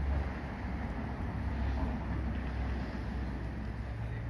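Steady low rumble of city street traffic with a general outdoor hum.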